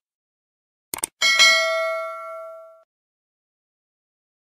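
Sound effect of a subscribe-button animation: a quick double mouse click about a second in, then a single bright notification-bell ding that rings out and fades over about a second and a half.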